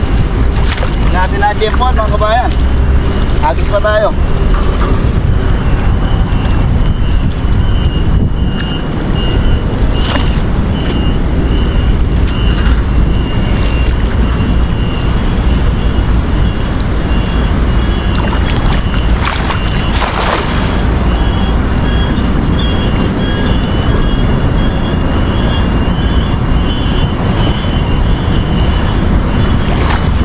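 Wind buffeting the microphone over river water, with splashing as a cast net is hauled dripping out of the water, gathered and thrown back in.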